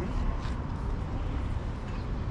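Steady outdoor city-street noise: a low, even rumble of traffic with no distinct events.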